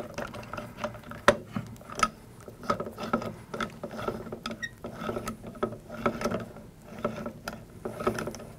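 Small irregular metal clicks and ticks of a T-handle hex key turning a screw into the handle of a Blitzfire firefighting monitor, a few per second, with one sharper click about a second in.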